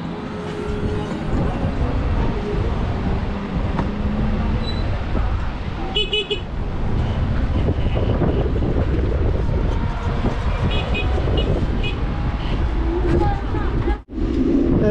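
Wind rumbling on the microphone of a moving electric bike, with a short electric horn beep about six seconds in and a run of about four quick beeps a few seconds later.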